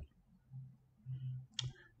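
A single sharp computer-mouse click, selecting a slide, right at the start, followed by a few faint, low, short sounds and a soft tick before speech resumes.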